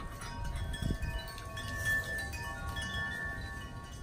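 Wind chimes ringing: several clear metal tones struck at different moments and left to ring on, overlapping, over a low background rumble.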